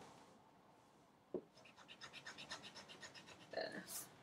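Pencil sketching on paper, a faint run of quick scratchy strokes after a light tap a little over a second in.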